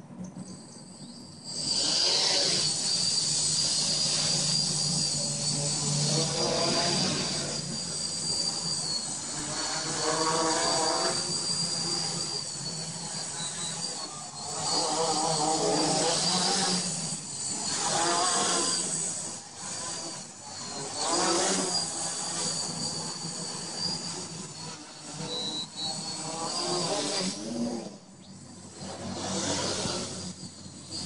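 FY450 clone quadcopter flying on its Hobby King 2210N 1000 kV motors with APC 9x4.7 props. The motors spool up about a second and a half in, then run with a steady high whine whose loudness swells and drops as the throttle changes.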